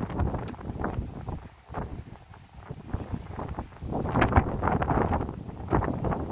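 Strong wind buffeting the microphone in gusts, a heavy low rumble that drops away for a couple of seconds mid-way and then picks up again.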